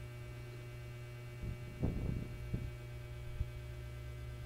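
A steady low hum, with a few faint short knocks about halfway through.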